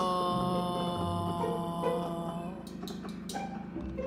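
A long, drawn-out dramatic 'Noooo' cry held on one note, slowly sinking in pitch and fading out about two and a half seconds in, with music beneath it.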